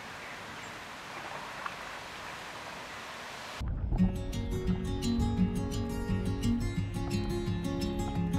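Steady rush of a shallow river. About three and a half seconds in, it cuts off abruptly and background music with a steady beat takes over.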